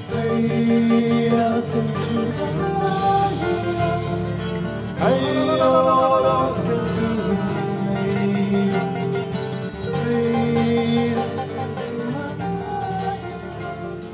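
Martin OM-42 acoustic guitar fingerpicked, with a wordless singing voice that slides up into a held, wavering note about five seconds in.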